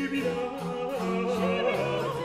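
French Baroque petit motet: a high voice singing with wide vibrato over a sustained low continuo bass line.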